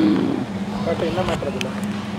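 Warehouse-store ambience: a steady low hum with faint voices, loudest in the first half second and again around a second in.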